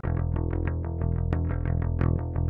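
Dry, unprocessed electric bass, a Fender Precision Bass copy recorded straight into the interface and doubled on two tracks, playing a quick run of picked notes at about eight a second. It has old strings and no amp, effects or compression.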